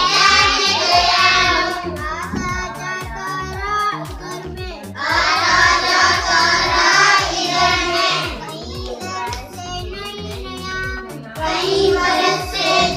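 Children singing a Hindi poem for school, with fuller, louder group lines alternating every few seconds with quieter lines carried by one girl's voice.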